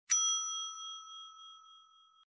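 A single bright bell ding, the notification-bell sound effect of a subscribe animation. It is struck once just after the start and rings out, fading slowly over about two seconds.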